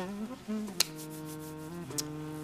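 A low, buzzy pitched tone held on a few steady notes that step in pitch, with a sharp click a little before halfway.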